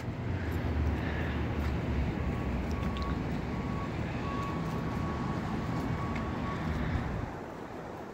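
Steady low rumble of city noise heard from a high rooftop, with a faint thin steady tone coming and going in the middle; the rumble drops away sharply about seven seconds in.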